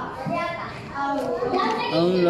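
A man's voice reciting the Qur'an aloud in a chanted melodic style. There is a short break between long, drawn-out phrases, with a few shorter voiced syllables in the middle.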